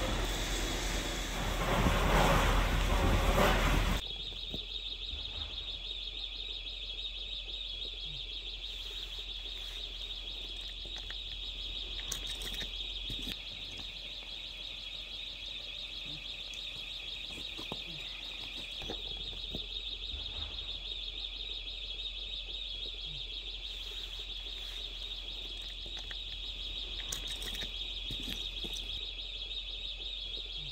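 A loud rushing noise for the first four seconds, then a steady high-pitched trilling electronic alarm tone that runs on unbroken, with a few faint clicks.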